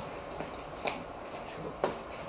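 Quiet room noise with two brief, faint clicks, one a little under a second in and one near the end.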